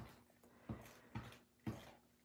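Faint soft taps, three in about two seconds, as the tip of a liquid glue bottle is dabbed onto a paper die-cut on a mat.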